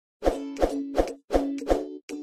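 Short intro jingle for a logo animation: five quick, evenly spaced pitched pop notes, each with a deep thud beneath it, about a third of a second apart.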